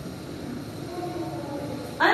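Steady background rumble of room noise, with faint squeaky strokes of a marker writing on a whiteboard near the middle.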